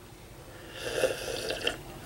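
A person sipping coffee from a glass jar: a noisy sip lasting about a second, with a short click near the end.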